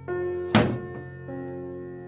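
Instrumental background music, with a single sharp plastic thunk about half a second in as the detergent drawer of a 1980 Philco W35A washing machine is pushed shut.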